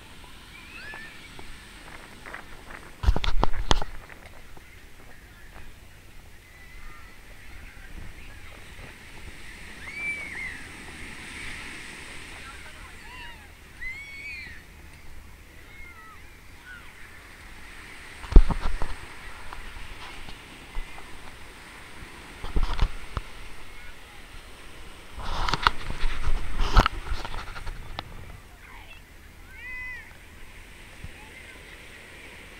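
Busy ocean beach ambience: waves breaking in a steady wash, with distant shouts and voices of bathers, broken by several loud, low rumbling bursts, the longest near the end.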